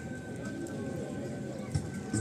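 A lull between songs: faint bird calls over quiet background noise, with a thin steady high tone and one small knock near the end.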